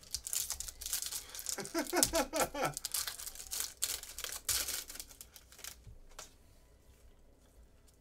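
A shiny trading-card wrapper being torn open and crinkled by hand: a run of crackling rips and crinkles for about six seconds that then dies away.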